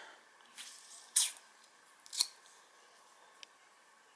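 Handling noise from a handheld camera: three short scuffing rustles, the second, about a second in, the loudest, and a faint click near the end.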